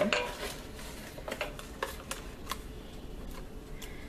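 A few light clicks and knocks of kitchenware around a stainless steel cooking pot, spread across a few seconds over a faint steady background.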